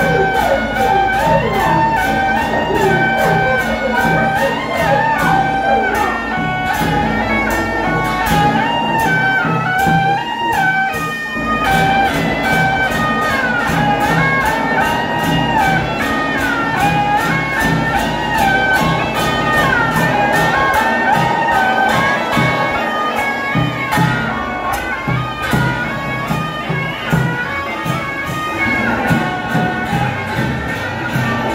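Taiwanese kai lu gu (road-opening drum) troupe playing. A reedy suona melody runs over steady, evenly repeated strokes of the big drum and hand cymbals.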